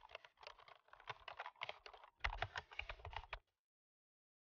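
Keyboard typing sound effect: a rapid run of key clicks that gets louder and heavier about two seconds in and stops suddenly near the end.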